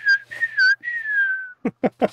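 A person whistling in imitation of screeching Nebelwerfer rockets: two short high whistles, each dipping at its end, then a longer one that slowly falls in pitch.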